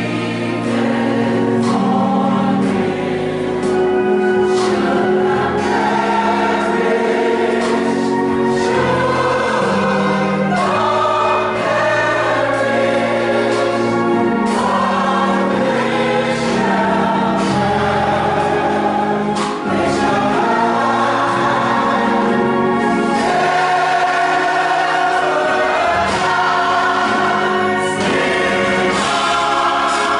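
A church gospel choir singing, many voices together in a continuous song.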